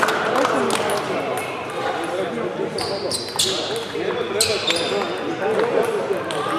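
Table tennis balls clicking on tables and bats in a large hall, over a murmur of voices. A few short, high squeaks come about three to four and a half seconds in.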